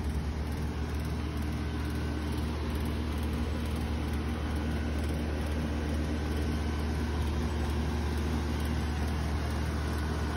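Outdoor air-conditioning condenser unit running, a steady low hum with a faint high tone above it.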